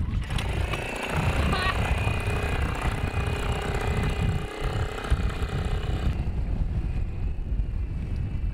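Small outboard motor on an inflatable dinghy running as the dinghy pulls away. Its higher engine tone fades about six seconds in, leaving a low rumble.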